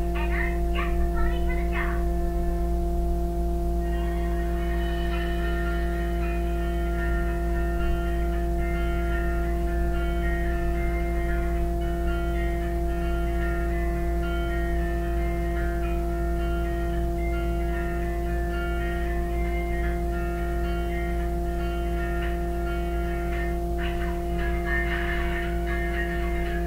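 Cartoon soundtrack music played on a TV: a light melody of short plucked-string notes, with character voices briefly at the start and again near the end, over a steady low hum.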